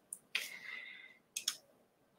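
Faint clicks: one near the start, then two in quick succession about a second and a half in, with a soft hiss between them.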